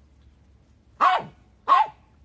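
Lhasa Apso barking twice, short sharp barks about a second in and again just before the end.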